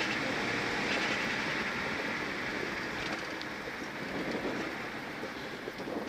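Rally car cabin noise on a straight: steady road, tyre and wind rumble with no clear engine note, slowly getting quieter.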